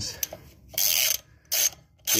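Socket ratchet wrench on a car wheel's lug nut clicking in two runs, a longer one about a second in and a short one near the end, as the handle is swung back between strokes.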